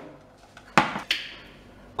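A white ceramic plate set down on a worktop: one sharp knock about three-quarters of a second in with a short ring after it, and a lighter second knock just after.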